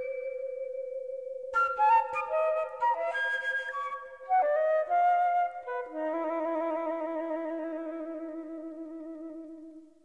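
Flute with electronic tape sounds. A long held tone with a slight waver runs under quick, short flute notes from about a second and a half in. About six seconds in, two steady wavering tones take over and fade away toward the end.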